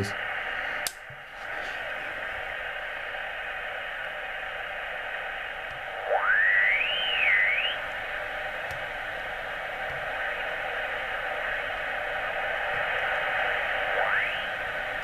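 Yaesu FT-857D HF receiver hissing with 40-metre band noise as it is tuned up the band in LSB. About six seconds in a whistle sweeps up in pitch and wavers for a second or two, and another rises near the end: heterodyne birdies of the kind the operator puts down to the oscillator of a Jaycar MP3800 switch-mode power supply running nearby.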